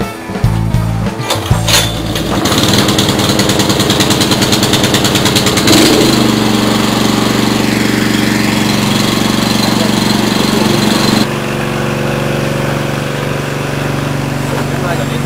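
Guitar-and-drum music, then an engine starts up about two seconds in. It runs with a fast, even pulsing before settling into a steady hum, and its pitch shifts near the end.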